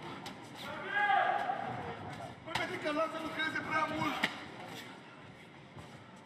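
Men's voices shouting around the cage during a kickboxing bout, one call about a second in and more between about 2.5 and 4 seconds, with a few short thuds of strikes and footwork on the canvas.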